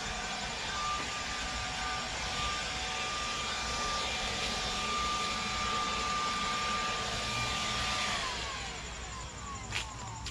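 SnapFresh 20V cordless electric leaf blower running on its lowest (number one) setting: a steady motor whine over a rush of air. About eight seconds in it is switched off and the whine falls in pitch as the motor spins down.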